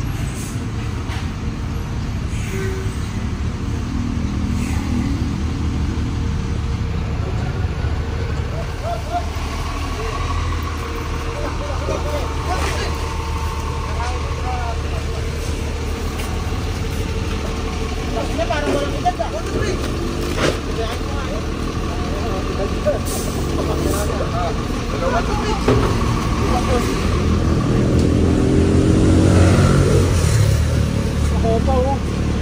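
A motor vehicle's engine running steadily with a low rumble, with people's voices in the background from about ten seconds in.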